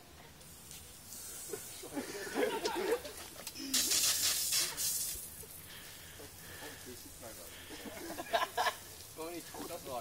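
Voices of a small group outdoors, talking and calling out, with a loud burst of rushing hiss lasting about a second, about four seconds in.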